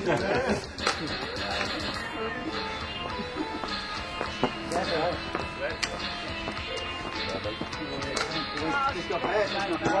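Music playing, with indistinct voices of people talking over it.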